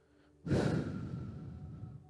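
A man's long sigh, breathed out close to a handheld microphone. It starts suddenly about half a second in and fades away over the next second and a half.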